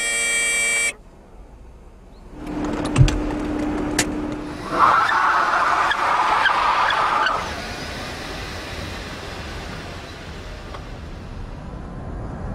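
A car horn sounds once for about a second as a thumb presses the round button on the dashboard. After a short lull a car is heard driving, a steady hum and then a louder, higher rushing sound that fades away about seven and a half seconds in.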